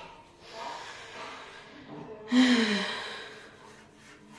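A woman's short, breathy sigh of effort, falling in pitch, a little past halfway, as she strains at a glass balcony door that won't open.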